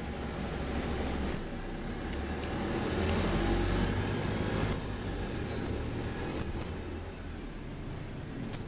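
Wright StreetLite DF single-deck bus heard from inside the saloon while under way: a steady low engine and drivetrain rumble with road noise. It grows louder about three seconds in and eases off again shortly before five seconds.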